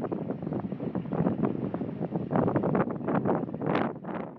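Wind buffeting the camera's microphone in uneven gusts, with a stronger gust near the end.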